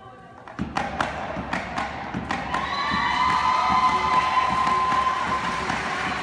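Hula accompaniment: a run of sharp thumps, the kind a kneeling chanter makes striking an ipu gourd drum. About halfway through, a chanting voice comes in and holds one long note.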